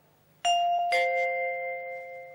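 Two-tone ding-dong doorbell chime: a higher note about half a second in, then a lower note half a second later, both ringing on and fading slowly.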